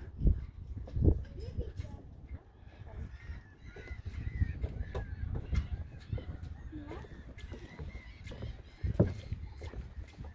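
Outdoor ambience: wind buffeting the microphone in uneven low rumbles, with a few heavier thumps, among them two early on about a second apart and one near the end. Faint distant voices and calls sound over the top.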